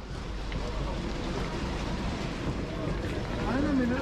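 Steady hiss of railway station platform background noise, with a faint voice near the end.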